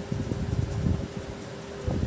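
Pen strokes on paper, soft and irregular, over a steady low room hum like a fan's.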